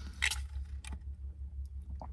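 Drinking through a straw from a paper fast-food cup: one short slurp about a quarter-second in, then a few faint mouth clicks, over a steady low rumble.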